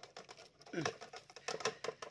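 Chopped mushrooms sliding off a metal bowl into a pot of boiling water to be blanched: a quick, irregular patter of small clicks. A brief voice sounds about a second in.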